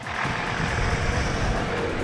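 Steady outdoor background noise with a low rumble under it, picked up by a handheld field recording at a lakeshore.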